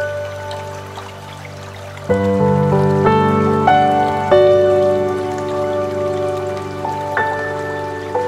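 Slow, calm piano music for meditation. A low chord enters about two seconds in, and single notes follow, each struck and left to fade, over a faint background of running water.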